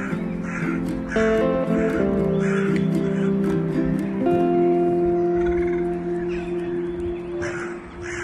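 Calm background music of long held notes, changing chord about a second in and again just after four seconds, over a run of short repeated bird calls that thin out in the second half.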